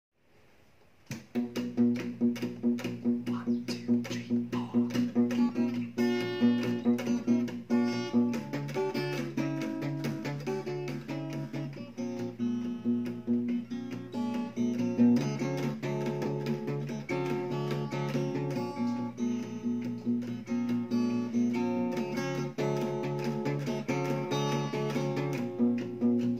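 Acoustic guitar played fingerstyle, starting about a second in: a steady picked alternating bass line with melody and harmony notes above it.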